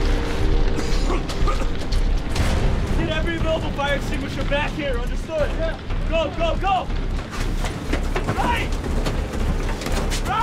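Cabin sound of a stricken bomber in flight: a constant low engine drone with clattering and clicking, and strained, wordless voice sounds from a crewman between about three and seven seconds in.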